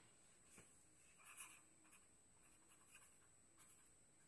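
Faint scratching of a pen writing on paper, in a few short strokes, the loudest a little over a second in.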